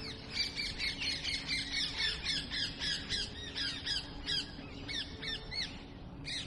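Many birds chattering together: short, high, chirping calls, several a second and overlapping, with a faint steady low hum underneath.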